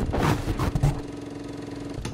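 Electronic logo-intro sound effect: a crackling, glitching noise burst over a deep rumble and one steady held tone, settling to a steadier hiss after about a second.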